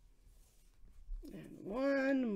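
A domestic cat meowing: one drawn-out call that starts just over a second in, rising in pitch and then held.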